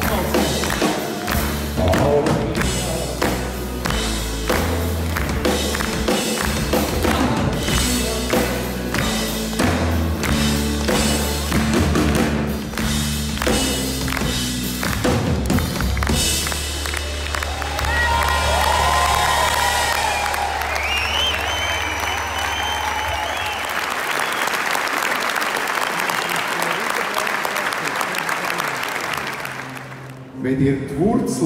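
Live country band of electric guitars, bass guitar, pedal steel guitar, acoustic guitar and drum kit playing out the end of a song, with a steady drumbeat. About sixteen seconds in the drums stop and the band holds a final chord. Audience applause swells over the chord and carries on after it fades.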